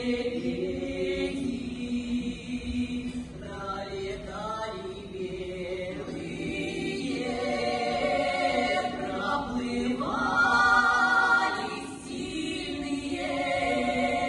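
Four-woman vocal ensemble singing a Russian song in harmony, with long held notes; the singing swells to its loudest about ten to eleven seconds in.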